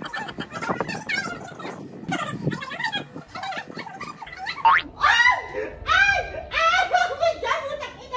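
A man laughing helplessly while being tickled, in short repeated bursts that grow higher and more strained in the second half.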